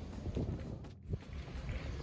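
Wind rumbling on the microphone over faint outdoor ambience, with a brief dropout in the sound about a second in.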